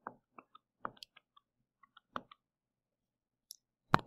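Scattered faint clicks and taps from a computer pointing device used to draw on screen, with silence between them and a sharper click near the end.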